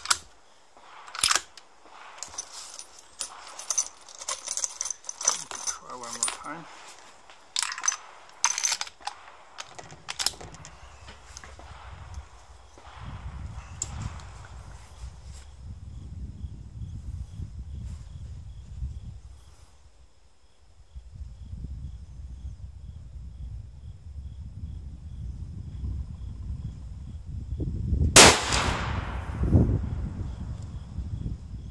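A run of small clicks and knocks as the rifle is handled. Then a low rumble, and near the end a single shot from an ATA ALR bolt-action rifle in .308 Winchester with a long ringing tail, fired while it is being zeroed.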